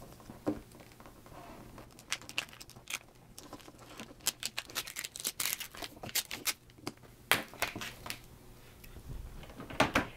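Cut reflective glitter heat transfer vinyl being weeded: a weeding hook lifts the vinyl and the waste is peeled off its clear plastic carrier, giving irregular crackles and tearing sounds, thickest in the middle few seconds.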